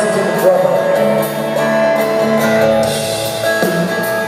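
Live rock band playing: acoustic guitars strumming chords over drums and cymbals.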